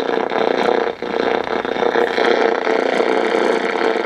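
Static from a 1970 Motorola solid-state AM/FM clock radio's speaker as its dial is turned between stations, with a steady tone running through it and a brief dropout about a second in.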